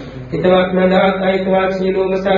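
A Buddhist monk's voice chanting on a steady, nearly level pitch. It starts about half a second in, after a brief pause.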